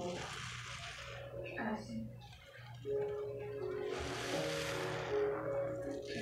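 A soap-soaked sponge squeezed by hand in a basin of thick foam, giving wet squelching and fizzing. The squeezing comes in two long stretches, the second starting about three seconds in. Background music with held notes plays underneath.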